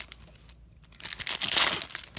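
Foil wrapper of a hockey card pack crinkling as it is torn open, starting about a second in after a quiet moment.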